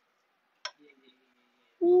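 Mostly quiet, broken by a single sharp click a little over half a second in; a man starts speaking near the end.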